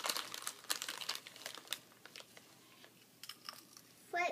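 Paper rustling and crinkling as hands press and slide on large sheets of painting paper, dense and crackly for the first two seconds, then only a few light crackles.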